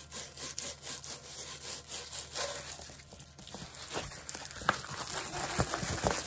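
A rolled diamond painting canvas rubbing and rustling as it is worked between the hands to unroll it. The sound is an irregular run of scrapes and crinkles.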